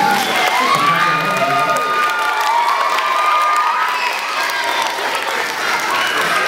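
A hall full of schoolchildren cheering and shouting, with high voices rising and falling and some long held yells, over clapping.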